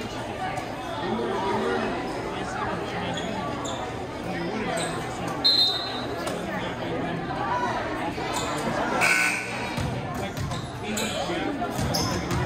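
Indistinct spectator chatter echoing in a school gymnasium, with a few sharp thuds of a volleyball being bounced and hit on the court, most of them in the second half.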